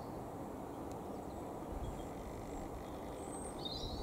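Faint, steady low rumble of a high-altitude Airbus A340 airliner's jet engines, heard from the ground, with a brief high chirp near the end.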